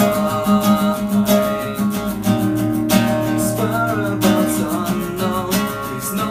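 Nylon-string classical guitar strummed in a steady rhythm, with a man's voice singing over it.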